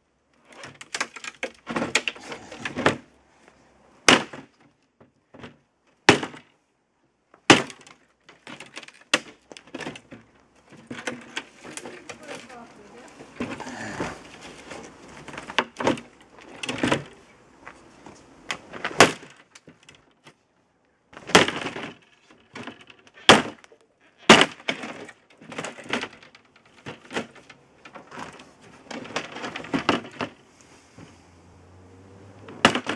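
Pathfinder Scout Tomahawk chopping into a wooden door panel: irregular sharp blows every second or two, with the wood cracking and splintering between strikes.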